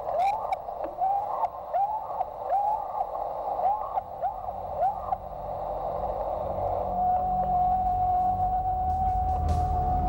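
A field recording, presented as sasquatch vocalizations, played back through a small handheld recorder's speaker with a thin, hissy sound: a string of short rising whoops, about two a second, for the first five seconds. After a pause comes one long, steady, high call from about seven seconds in.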